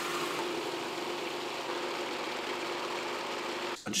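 Food processor motor running steadily, blending pesto while oil is added, then cutting off shortly before the end.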